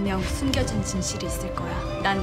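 A TV drama's soundtrack: background music with voices speaking over it.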